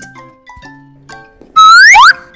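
Soft children's background music, then about one and a half seconds in a loud rising whistle sound effect that lasts about half a second as the next card appears.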